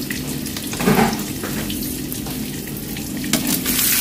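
Hot cooking oil sizzling and crackling in a kadai, with one brief louder moment about a second in.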